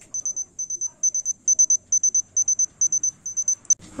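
Digital thermometer beeping a rapid string of short high-pitched beeps, several bursts a second, signalling that the temperature reading is complete. The beeping stops just before the end.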